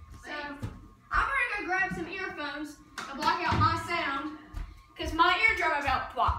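A boy talking in several short stretches, the words unclear.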